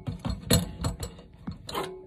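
A wooden broom handle knocking and rattling against the metal shredder plate and drain of a General Electric garbage disposal as it is levered round in a circle to free the jammed plate: a run of irregular sharp metallic clicks and knocks.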